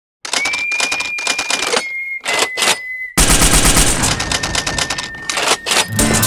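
A fast, rattling run of sharp clicks, like a typewriter or gunfire sound effect, over a steady high whistle-like tone; about three seconds in it turns denser and heavier, with low thuds under the clatter.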